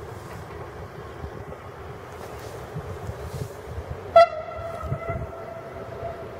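Horn of an approaching Fiat ALn 663 diesel railcar, one long blast that starts sharply about four seconds in and is held for about two seconds.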